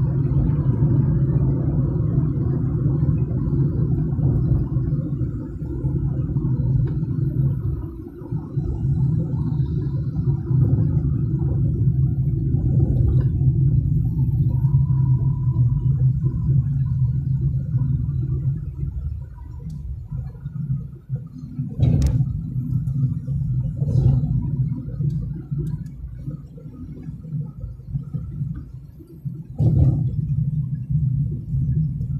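Car engine and road noise heard from inside the cabin: a steady low drone that dips briefly about eight seconds in and eases off after about twenty seconds as the car slows. Two sharp knocks come about two seconds apart near the end.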